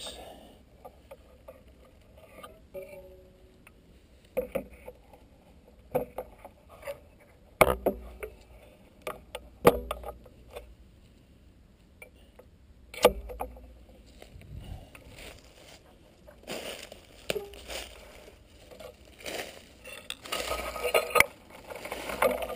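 Footsteps crunching and rustling through deep dry fallen leaves, with scattered sharp knocks; the crunching gets denser and louder near the end.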